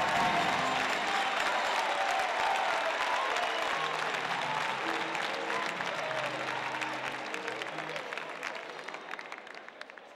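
Audience applauding, gradually dying away over the last few seconds.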